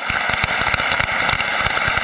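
Crowd applause, a dense patter of many hands clapping, played from a recording as a sound effect. It keeps going under the talk that follows.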